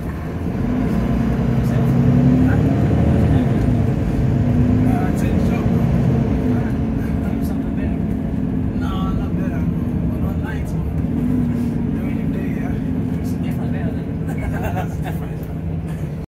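Double-decker bus engine and drivetrain heard from inside the upper deck, a steady low drone whose note rises and falls as the bus drives on. It gets louder about a second in.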